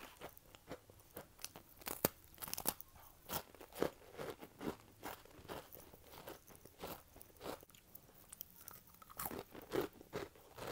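Chewing a crunchy cookie with the mouth closed: irregular crisp crunches, a few sharper ones early on and a quick run of them near the end.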